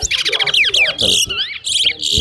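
Caged towa-towa finches singing: a fast, dense run of warbled notes sweeping up and down, then a short pause and a second burst of notes with slurred glides near the end.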